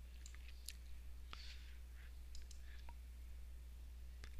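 Near-quiet room tone: a low steady electrical hum with a few faint, scattered clicks.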